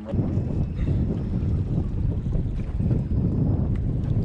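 Wind buffeting the camera's microphone over open water, a steady low rumble.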